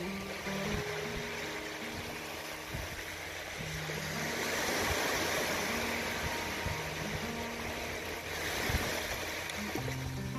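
Gentle plucked acoustic guitar music over small waves washing in on a sandy beach. The surf swells about halfway through and again near the end.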